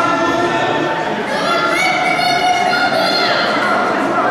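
Several voices singing or chanting together in long held notes, the pitch stepping up partway through.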